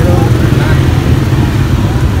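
A steady low rumble with faint voices of people talking in the background.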